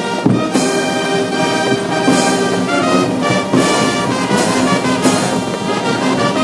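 A brass band playing music with a regular beat.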